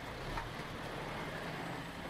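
Steady, even background noise with no distinct events: a continuous ambient rumble and hiss.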